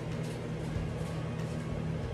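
Air conditioner running with a steady low hum.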